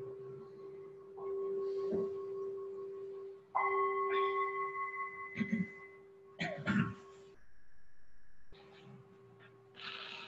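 A meditation bowl-bell struck and left ringing with a long steady hum, struck again about a second in and, more brightly, about three and a half seconds in, marking the end of a silent sitting. A couple of short noises in the room come around five and a half and seven seconds.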